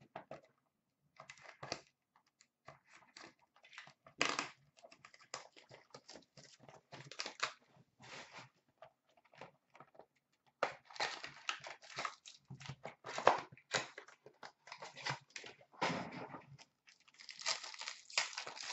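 Hands tearing and crinkling the wrapping of a hockey card box and handling the cardboard and cards: irregular rustles, rips and small clicks, with louder bursts about four seconds in and again from about eleven seconds on.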